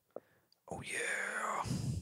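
A person's breathy, whispered voice, starting just under a second in and lasting about a second, after a faint click.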